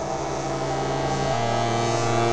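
Ambient synthesizer drone from a Geodesics Dark Energy complex oscillator, frequency- and ring-modulated and washed through the Dawsome Love ambient effect: many sustained tones held together. About 1.3 s in the low note changes and grows stronger, and the whole sound swells slightly.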